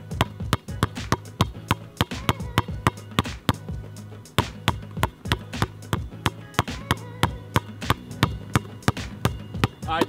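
Basketball being pounded in a fast stationary dribble on an asphalt court, sharp bounces at about three to four a second, over background music with a steady low bass line.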